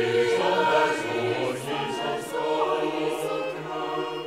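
Chamber choir singing a Norwegian folk-song arrangement, with held chords over a sustained low note in the lower voices. Sung 's' consonants hiss briefly three times.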